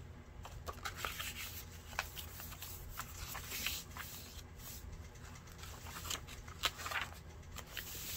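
Paper handling on a handmade junk journal: soft, scattered rustles and ticks as a loose lined journal card is moved about and a page is turned and smoothed flat by hand.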